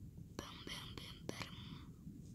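A person whispering for just over a second, starting about half a second in, over a faint steady low rumble.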